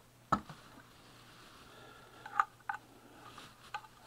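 A few sharp plastic clicks and knocks from a USB power adapter and its cable being handled: one clear click about a third of a second in, then several lighter clicks in the second half.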